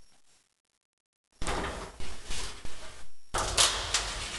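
A moment of silence, then about two and a half seconds of knocking and rattling from a louvered closet door being handled and opened, loudest near the end.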